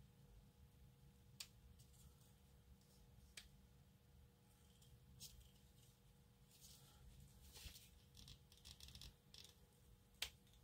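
Near silence broken by faint handling of plastic model-kit parts: a few sharp clicks a couple of seconds apart, then a stretch of light scratchy rubbing and clicking near the end as the AMT dozer frame's parts are fitted.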